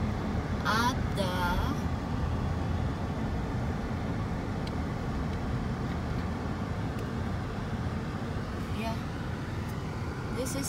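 Steady low road and engine noise heard inside a car's cabin as it rolls slowly along a street. A short bit of voice comes about a second in.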